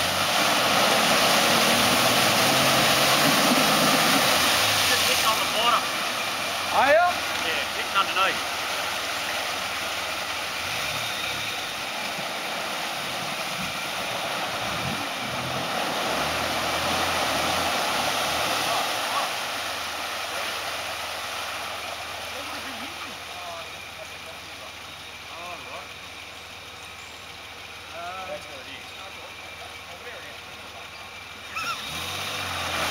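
Nissan Patrol 4WD engine revving, with a wheel spinning and churning through deep mud and water. It is loudest in the first few seconds and eases off over the last third. Only one wheel is spinning up, which onlookers put down to the front hubs not being locked.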